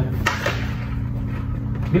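A single sharp click from a full-face motorcycle helmet being handled, about a quarter second in, over a steady low hum.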